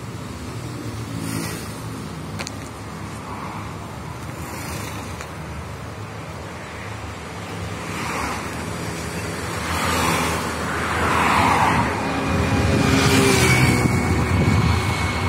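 Road traffic: cars passing one after another on a main road, with a steady low rumble under them. The passes come in the second half and grow louder, the loudest near the end.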